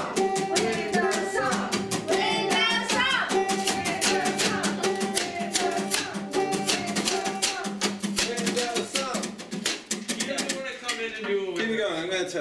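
Small acoustic band playing live: a banjo strummed in a fast, steady rhythm with percussion, held notes and singing. The playing thins out near the end.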